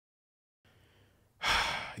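Silence, then a faint hiss, and about one and a half seconds in a man's audible breath just before he starts to speak.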